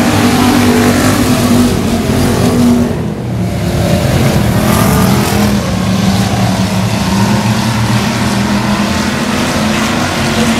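A pack of factory stock race cars running under throttle on a dirt oval, many engines sounding at once, with a short dip in loudness about three seconds in.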